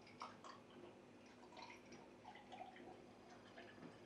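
A person drinking from a glass: faint gulps and small liquid sounds, with several short soft clicks.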